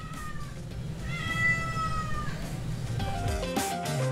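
A cat meowing twice: the first call trails off just after the start, and a second, longer call slides slightly downward about a second in. Background music runs underneath, with a brighter musical jingle beginning near the end.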